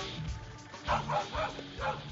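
Dramatic background music with a dog barking about four times in quick succession in the second half.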